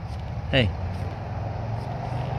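A man's voice saying "hey" once, over a steady low hum.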